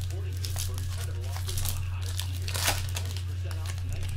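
A trading-card pack wrapper being torn open and crinkled by hand: a string of crackles and rips, the loudest rip about two-thirds of the way through. A steady low hum runs underneath.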